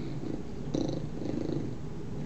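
A dog growling low and continuously while playing with another dog, swelling louder about three-quarters of a second in and again around a second and a half.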